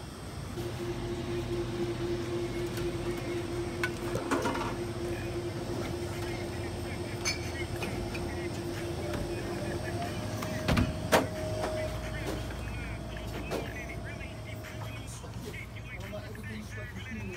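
Shop interior ambience: a low steady hum and a held tone that gives way to a higher one about ten seconds in. A few sharp knocks, the loudest about eleven seconds in, and voices in the background near the end.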